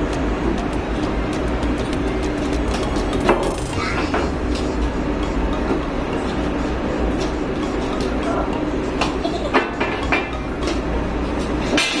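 Steady low machinery rumble of a ship's interior, with scattered knocks and clatter from work at a steel doorway, the sharpest about three seconds in and again near the end.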